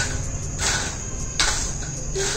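Crickets chirping steadily as a constant high tone, with two brief rasping scrapes about half a second and a second and a half in.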